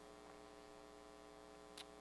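Near silence with a faint, steady electrical hum (mains hum) and a brief soft click near the end.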